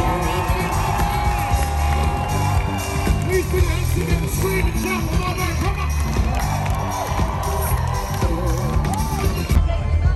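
Live pop band with a male lead singer playing loud through a festival PA, with a heavy bass beat, heard from within the crowd, which cheers along.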